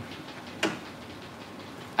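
Steady rain falling, a soft even hiss, with one brief click about half a second in.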